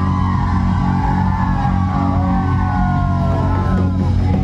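Live band playing an Assamese Bihu song: held low chords under a melody line that glides up and down.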